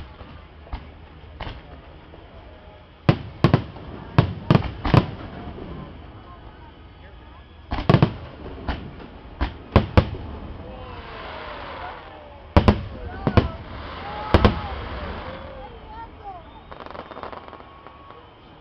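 Aerial fireworks shells bursting overhead: sharp booms come in three rapid volleys, about three seconds in, about eight seconds in and about twelve seconds in. A crackling hiss from glitter effects fills the stretch around the last volley.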